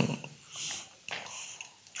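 A man breathing in between phrases: a soft, noisy inhale about half a second in, followed by fainter mouth and breath noises.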